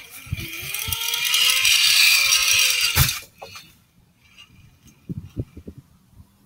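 Zipline trolley pulleys rolling along the cable: a whine that rises in pitch as the rider gathers speed, over a loud hiss, for about three seconds. It ends in one sharp knock. A few faint clicks follow.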